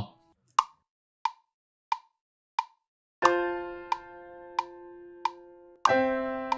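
GarageBand metronome giving a one-bar count-in of four clicks at 90 beats per minute. Then the Grand Piano plays a held F major chord about three seconds in, with the clicks going on every beat, and changes to a C major chord just before the end.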